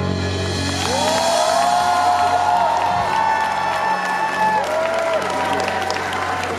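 Concert audience applauding and cheering, with a few long held cheers, while the band's last chord of a ballad rings on underneath.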